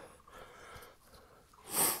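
Near silence for most of the time, then a quick breath drawn in by a man near the end.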